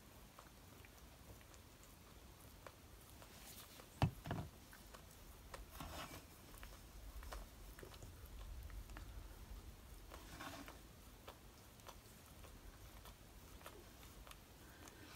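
Quiet handling sounds at a craft desk while paper pieces are glued and placed: one sharp knock about four seconds in, and a few faint rustles of paper and card.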